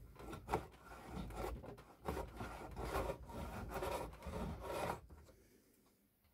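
Stanley No.55 combination plane cutting a molding profile along a softwood board: the iron shaving the wood with a rasping hiss, in two strokes, the second longer, stopping about five seconds in.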